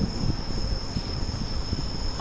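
A steady high-pitched whine over a low, uneven rumbling background.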